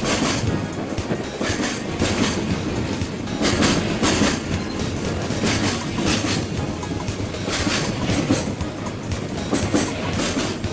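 JR Freight container train passing close by, its wagons rumbling steadily with wheels clacking repeatedly over the rail joints.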